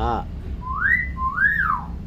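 Common hill myna whistling two clear notes in a wolf-whistle pattern: the first rises and holds, the second rises and falls back. A brief voice-like call comes just before them.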